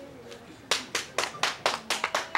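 Hands clapping in a steady rhythm, about four claps a second, starting a little under a second in.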